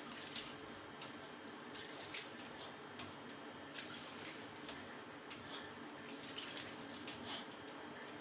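Water trickling and draining through boiled parboiled rice in a stainless steel colander as the rice is rinsed clean, with brief splashes now and then.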